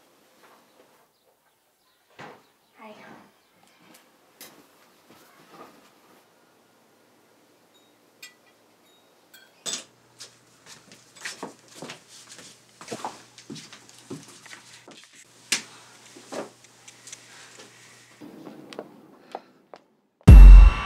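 Faint kitchen handling sounds: scattered clicks, knocks and clinks like dishes, cutlery and cupboard or drawer doors, beginning about halfway through, over a low steady hum. The first half is mostly quiet with only a few faint sounds.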